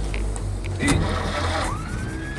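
Electric starter of a 1929 Peugeot 201 cranking its four-cylinder side-valve engine, with a rising whine near the end; the engine does not catch on this first try.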